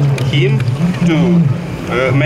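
A man speaking, talking steadily without a break.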